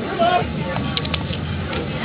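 Steady low outdoor background rumble with brief snatches of distant voices, and a few light clicks about a second in.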